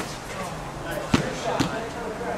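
A basketball bouncing on a hard court: three sharp bounces in quick succession about a second in, the middle one loudest.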